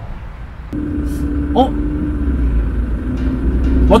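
Car engine running, heard from inside the cabin: a steady low rumble with a level hum over it, starting under a second in.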